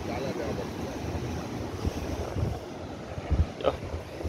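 Wind buffeting the microphone in uneven gusts over the steady wash of ocean surf breaking on rocks.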